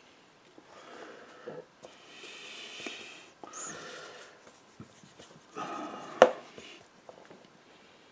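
A hake brush scrubbing and rubbing on watercolour paper and in a paint palette, in several short strokes, with one sharp knock about six seconds in, the loudest sound.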